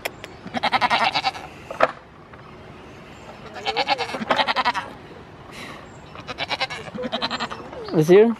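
Goats bleating: several quavering bleats in three bouts, about three seconds apart.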